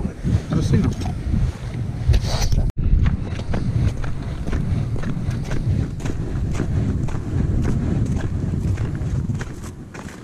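Wind buffeting the microphone in a steady low rumble, with footsteps on lake ice after a sudden cut about three seconds in.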